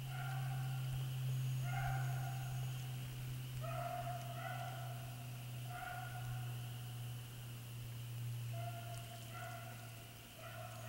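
Rabbit-hunting hounds baying on the trail, about seven drawn-out bays at uneven intervals, with a steady low hum underneath.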